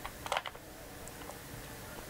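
A few small plastic clicks and taps from fingers pressing a Haylou T17 earbud in its charging case, bunched in the first half second, then faint room noise.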